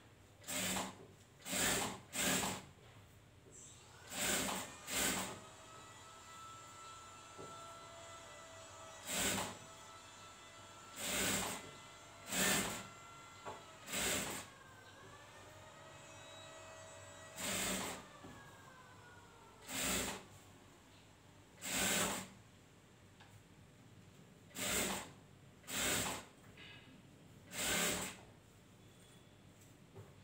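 Industrial sewing machine stitching in short spurts, about fifteen bursts of under a second each with brief pauses between.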